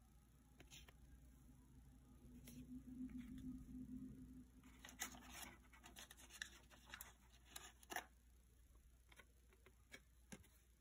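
Faint rustling and light clicks of cardboard trading cards and a wax-paper pack wrapper being handled, with a few sharper clicks between about five and eight seconds in.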